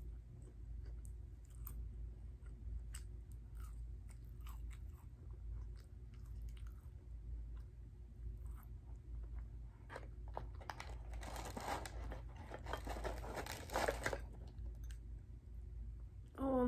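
Close-miked mouth sounds of chewing fried fast food: scattered soft chews and lip smacks, then a stretch of louder, dense crunching about ten seconds in that lasts some five seconds.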